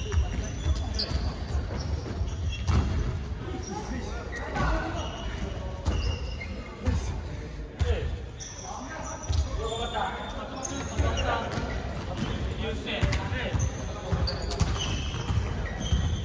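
Basketballs bouncing on a hardwood gym floor during play, a steady run of thumps, with short high sneaker squeaks and players' voices echoing in a large hall.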